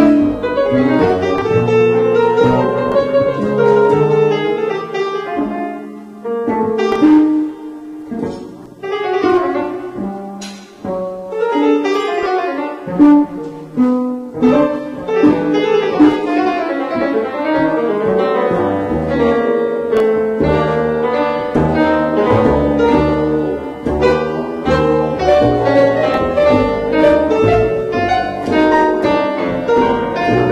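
Live free-jazz piano trio improvising: acoustic grand piano, upright double bass and drum kit, with dense piano chords and runs over bass and a few sharp cymbal or drum strikes.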